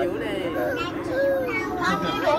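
Children and adults chattering and calling out, several voices overlapping, over the steady low drone of a tour boat's motor.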